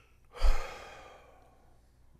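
A man's heavy sigh: one long breath out close to the microphone, starting about half a second in with a low pop as the breath hits the mic, then fading away over about a second.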